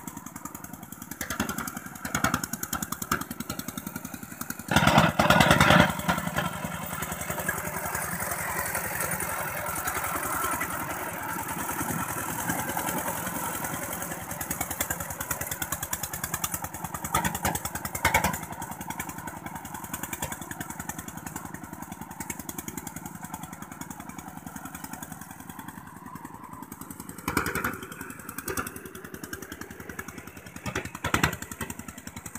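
Two-wheel walking tractor's single-cylinder diesel engine chugging steadily under load as its cage wheels till muddy paddy soil, with a louder surge about five seconds in.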